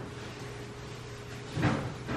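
A quiet room with a faint steady hum, then one short knock about three-quarters of the way through.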